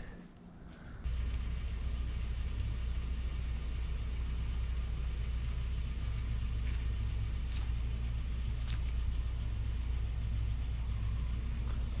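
A steady low rumble that sets in suddenly about a second in, with a few faint clicks around the middle.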